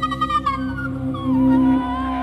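Live duet of voice processed through effects pedals and cello: a high, wordless note slides down in pitch and settles over a held low note.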